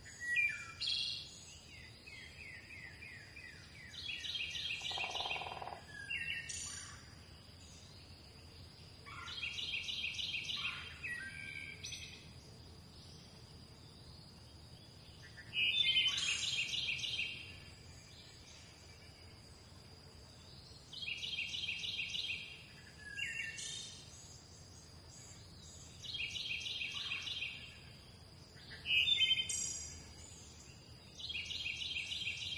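Birds singing: a short, buzzy, trilled phrase repeated about every five seconds, with scattered short chirps between and a faint steady high tone underneath.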